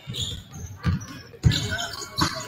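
Basketballs bouncing on a hardwood gym floor: a few separate thumps, the loudest about one and a half seconds in.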